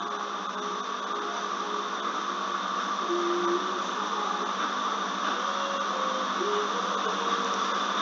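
Steady machine-like whirring hum with no change in level, with a few faint short tones sounding beneath it.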